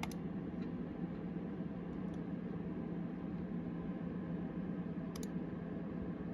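Steady hum and hiss of computer fans with a faint low tone, broken by sharp mouse clicks: one at the start and another about five seconds in.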